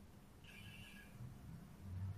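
Near silence: room tone on a webinar call, with a faint, brief high-pitched tone about half a second in.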